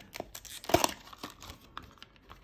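Clear plastic blister pack being pried open by hand, crinkling and crackling in a run of small sharp clicks, with one louder crack a little under a second in.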